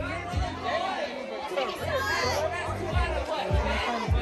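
Many voices chattering at once over music with a deep, repeating bass beat.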